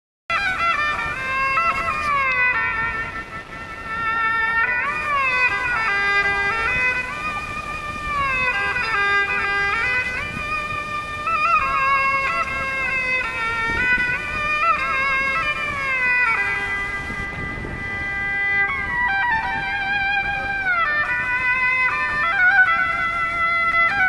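Erhu, the Chinese two-string bowed fiddle, played solo: a continuous melody of held notes joined by sliding glides in pitch. It begins abruptly just after the start.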